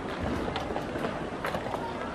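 Rapid clicks of wooden chess pieces being set down and chess-clock buttons being hit, several a second, in a blitz time scramble, over a background of voices.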